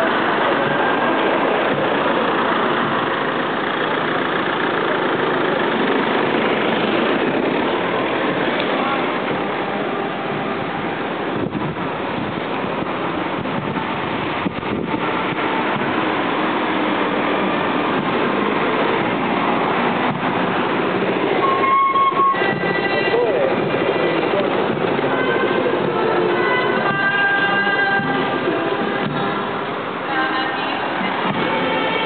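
Crowd of a street procession talking as it walks, many voices overlapping, with car traffic beside it. A short steady tone sounds about two-thirds of the way in, and held tones, like singing, sound near the end.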